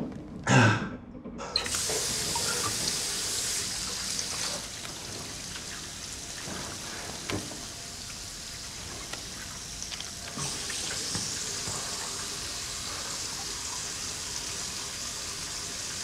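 A bathroom tap running into a sink: a steady rush of water that starts about a second and a half in, eases off for a few seconds in the middle and picks up again near the end.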